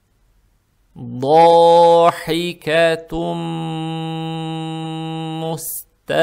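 A man chanting Quran recitation in tajwid style, melodic and drawn out. After about a second of silence he sings a short phrase, then holds one long, steady vowel for about two and a half seconds before breaking off just before the end.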